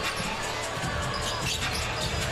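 A basketball dribbled repeatedly on a hardwood court, its bounces over steady arena crowd noise and music.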